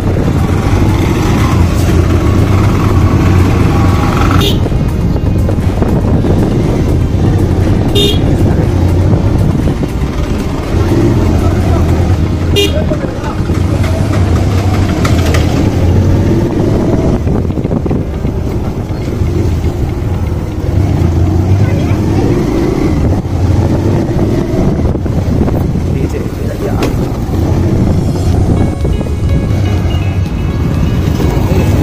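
A motorcycle's engine running steadily while it rides slowly along a village street, with road and wind noise; a few short knocks come through, about four, eight and twelve seconds in.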